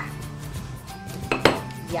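A sharp glass clink about one and a half seconds in, from a glass cookie jar as cookies are set into it, over steady background music.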